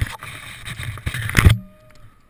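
Wind buffeting and rustling on a head-mounted camera's microphone, a rough rumble with crackles, that cuts off suddenly about one and a half seconds in.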